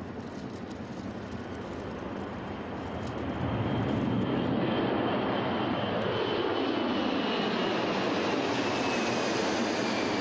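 Boeing C-17 Globemaster III's four Pratt & Whitney F117 turbofan engines at takeoff power as it lifts off and climbs overhead. The jet roar grows louder about three and a half seconds in, and a whine falls in pitch as the aircraft passes over.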